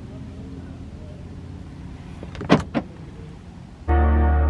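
Steady low rumble of a car cabin on the move, with two sharp clicks about two and a half seconds in, a quarter of a second apart.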